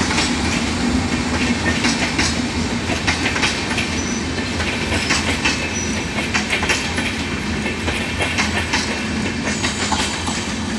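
LHB passenger coaches passing at close range: a steady rumble of wheels on rail with irregular clickety-clack over the rail joints, and two brief high squeaks near the middle.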